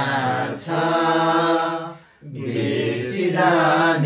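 Several voices singing or chanting together without accompaniment, in long held notes: two phrases with a short break about two seconds in.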